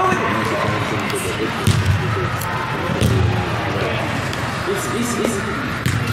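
Overlapping voices of players and spectators in a large indoor sports hall during a youth soccer game, with two dull thuds of the ball being kicked, about two and three seconds in.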